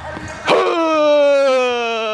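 A person's voice holding one long, loud call that starts about half a second in and slowly falls in pitch, lasting about three seconds.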